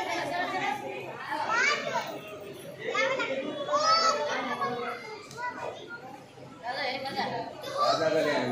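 Children's voices calling and talking in high, swooping tones, mixed with other people's chatter.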